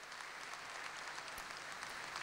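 Audience applauding, faint and growing slowly louder.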